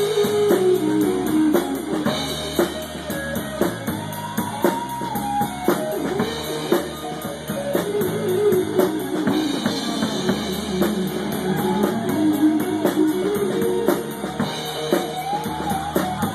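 Live blues-rock trio playing: an electric guitar lead with bending, gliding notes over a drum kit and bass guitar.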